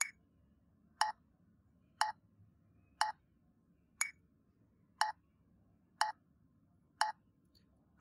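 Metronome clicking once a second in two bars of four, eight clicks in all. The first click of each bar is higher and brighter than the three after it, marking the strong beat followed by three weak beats of a quaternary measure.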